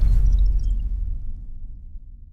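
The deep, low tail of a logo-intro sound effect, fading steadily away.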